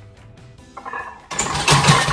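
Background music, then about a second in a loud, rough burst of noise as a 120 kg barbell bench press is driven up, lasting over a second.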